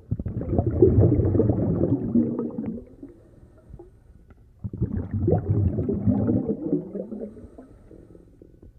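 Underwater bubbling and gurgling sound effect, swelling up twice for about three seconds each with a quiet gap between.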